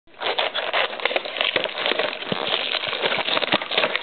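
Clear plastic shrink-wrap on a trading-card box crinkling and crackling continuously as it is handled and torn open.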